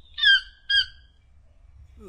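Toucan calls: two short squawks about half a second apart, each a brief yelp that falls slightly in pitch.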